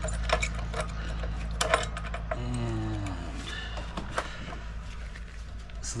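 Scattered metallic clinks and taps of a hand tool against the metal fittings of a soft-wash booster pump as a threaded fitting is loosened, over a steady low hum.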